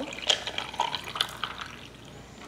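Hot cocoa and black coffee poured from a pot into a glass mason jar full of ice, the liquid splashing over the cubes with irregular crackles, fading toward the end.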